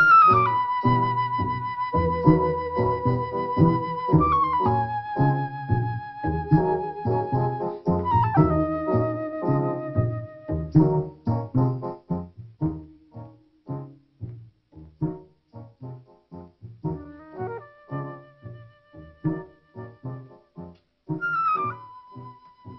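Film-score music: a high melody holds long notes, sliding down to each new one every few seconds, over rapid short notes below. After about twelve seconds it thins out to sparser, quieter short notes.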